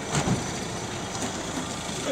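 An SUV's engine running at low speed close by, a steady drone with the noise of the street around it.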